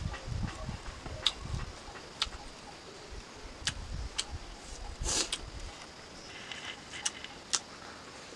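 Close-up eating sounds: chewing with sharp mouth clicks and smacks scattered throughout, and a short rustle about five seconds in as fingers gather rice from a banana leaf.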